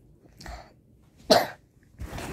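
A single short cough about one and a half seconds in, preceded by a fainter short sound.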